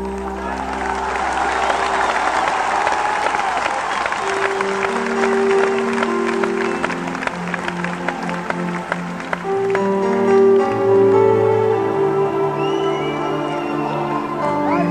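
Live band playing an instrumental passage of held chords, with the audience applauding over it for roughly the first nine seconds before the clapping dies away.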